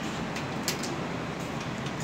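Steady hum of running air-conditioning equipment, with a few light clicks in the first second.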